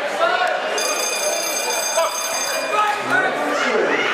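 Electronic boxing timer buzzer sounding one steady high tone for about two seconds, the signal for the next round, over crowd chatter in a large hall.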